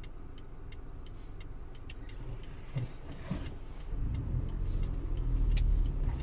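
Car's turn indicator ticking evenly inside the cabin over a low engine idle; about four seconds in, the engine note rises as the car pulls away into a left turn.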